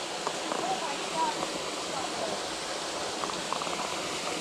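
Steady rush of flowing creek water, with a faint voice and a few light ticks in the background.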